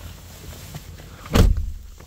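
A single dull thump about one and a half seconds in, over a low steady rumble.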